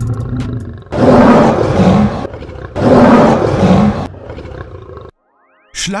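A lion roaring twice in a row, each roar a bit over a second long with a short break between them, used as a sound effect.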